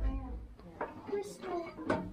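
Indistinct talking, with a sharp click near the end.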